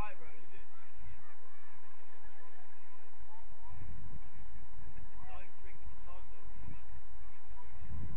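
Low gusty rumble of wind on the microphone, with a few short distant high calls near the start and again around five and six seconds in.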